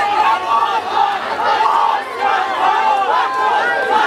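Concert crowd cheering and shouting, many voices overlapping at a steady, loud level.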